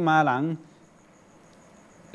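A man's voice speaking Thai breaks off about half a second in, leaving a faint hiss and a faint, high, evenly pulsing tone.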